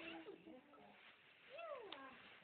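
A baby's short meow-like cry, one rising-then-falling wail about a second and a half in.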